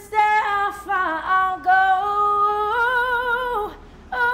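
A woman singing unaccompanied, one voice moving through a run of long held notes, the last of them with a wavering vibrato before it fades out near the end.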